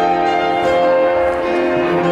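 Piano music with held chords that change about once a second.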